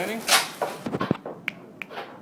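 A few short, sharp clicks or taps: one about a second in, then two more, a third of a second apart, near the end. Each has a brief ringing tone.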